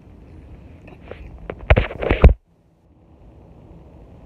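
Rubbing and bumping of a handheld phone against its microphone as it is moved, loud for about half a second in the middle, then the sound drops out completely for a moment.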